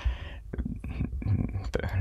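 Speech only: a soft, breathy pause in conversation with a few faint mouth clicks, then a clipped syllable near the end.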